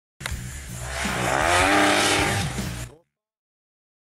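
Short intro sting: a music-like sound of several pitches that swell and glide up and down for about three seconds, then cut off abruptly into dead silence.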